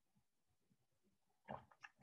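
Near silence, with a brief breath from the speaker near the end, just before she speaks again.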